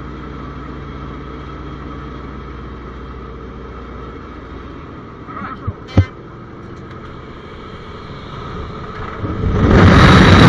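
Antonov An-2's single nine-cylinder radial engine droning steadily as heard inside the cabin, with a sharp knock about six seconds in. Near the end a loud rush of wind rises quickly as the open door is reached for the exit.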